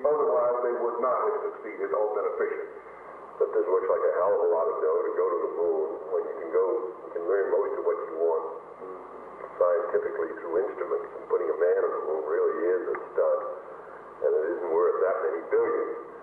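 A 1963 White House tape recording of men in conversation in English. The voices sound thin and narrow, like a telephone line, with no bass or treble.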